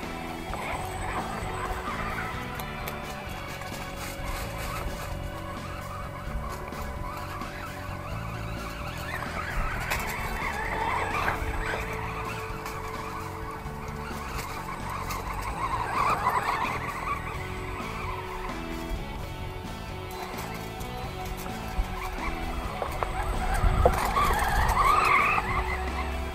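Background music, with the brushless electric motor of an Axial Exo Terra RC buggy (3200kv, 3S battery) whining up and down in pitch in three bursts of acceleration, the loudest near the end, its tyres scrabbling on loose dirt. The motor is being run at light throttle, under a sixth.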